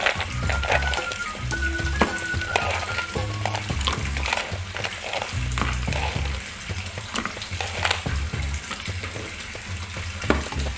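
Ice cubes scooped with a metal spoon from a plastic bowl and dropped into plastic cups of syrup: irregular clinks, knocks and scraping, over a crackling hiss.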